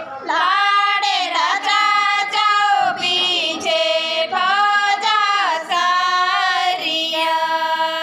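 Women singing a song with long held notes that slide from pitch to pitch.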